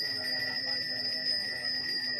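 A Balinese priest's hand bell (genta) rung without pause, a steady high ringing over a low murmur of voices.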